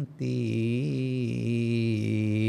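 A Buddhist monk chanting Pali in a single male voice, drawing out the closing syllable "ti" of a sutta passage as one long, steady held note with slight wavers in pitch.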